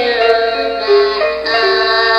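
An electronic musical gift toy singing a synthesized tune, a melody of steady, held notes that step from one pitch to the next every half second or so.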